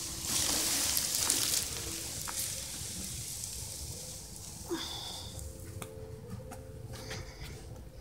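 Water being poured out, splashing and hissing for about the first second and a half, then trailing off into a fainter hiss.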